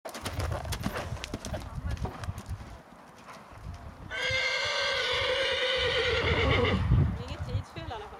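Horse hooves thudding on a sand arena at the canter. A horse neighs once, a long call of nearly three seconds in the middle that wavers slightly toward its end and is the loudest sound.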